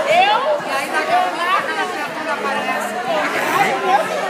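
Overlapping chatter of many people talking at once, with one high voice rising sharply at the start.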